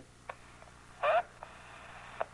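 A brief spoken sound about a second in, with a few faint clicks around it over a low steady background hum.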